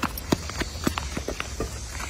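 Footsteps on artificial turf: a quick, uneven run of light taps, about five a second, over a steady low rumble.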